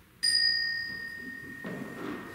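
A small bell struck once, giving a clear high ringing tone that decays slowly, with soft thuds near the end.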